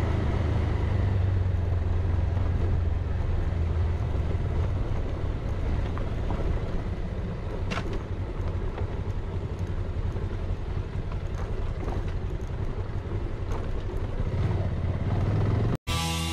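Motorcycle engine running steadily at riding speed on a dirt road, with road and wind noise over it; it cuts off suddenly just before the end.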